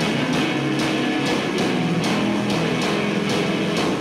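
Rock band playing live: electric guitars held over drums, with a steady cymbal pulse about three hits a second.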